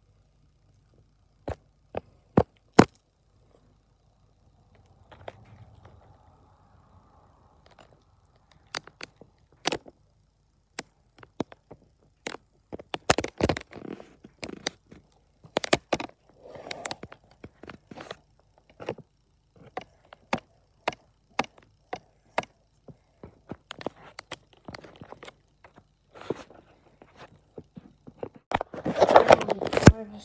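Close-up handling sounds at a table: scattered sharp clicks, taps and knocks, coming thicker in places, with a longer stretch of scraping and rustling near the end.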